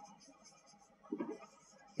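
Marker writing on a whiteboard: one short stroke sounds about a second in, against a quiet room.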